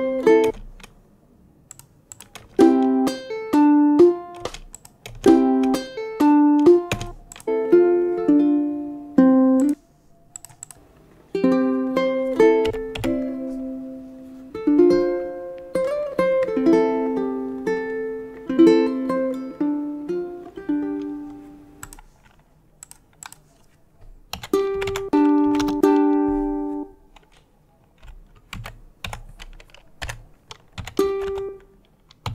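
Fingerpicked ukulele phrases, each a few seconds long, stopping and starting again after short pauses. Computer keyboard clicks fall in the gaps, most of them near the end.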